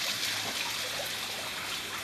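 Water trickling and running steadily into a fish pond.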